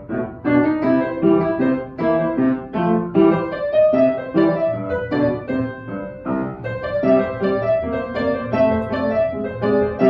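Upright piano played in a steady run of quick notes, both hands going, with a brief break just at the start before the notes carry on.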